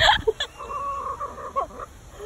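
Chickens calling. One call is a level note held for over a second.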